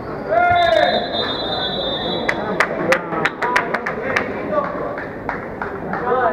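Indoor handball game sounds in an echoing sports hall: a shouted voice, a steady high whistle-like tone lasting about two seconds, then a quick run of sharp knocks, about four a second.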